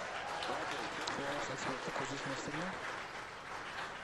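A crowd cheering and applauding, with shouting voices mixed in, as a burst of celebration at the confirmed stage separation of the Falcon 9. It starts suddenly and carries on at a steady level.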